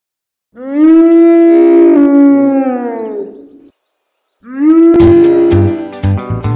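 Two long, low animal-like calls from a sound effect, each held on a steady pitch and sagging at the end; the first lasts about three seconds. Strummed guitar music comes in about five seconds in, over the second call.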